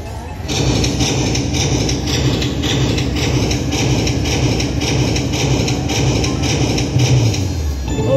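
Konami Prize Strike slot machine playing its win count-up: a quick, evenly repeating run of bright chiming tones over a low pulse while the total-win meter climbs. It starts about half a second in and stops just before the end.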